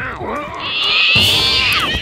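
A cartoon creature's loud, high, wavering screech, starting about half a second in and lasting over a second.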